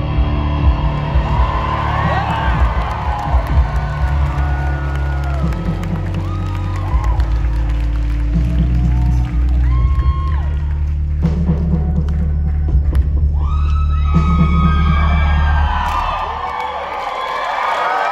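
Live rock band of electric guitars, drum kit and keyboard playing the closing bars of a song, with long held low chords. An audience cheers and whoops over it, louder in the second half. The band's low end stops about two seconds before the end, leaving the cheering.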